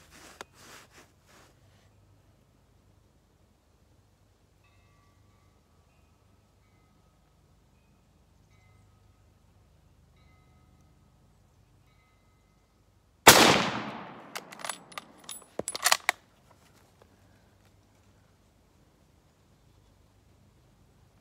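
A single .30-06 rifle shot from a 1903 Springfield-pattern bolt-action rifle about 13 seconds in, with a ringing tail. It is followed over the next few seconds by a quick series of sharp metallic clacks as the bolt is worked to chamber the next round.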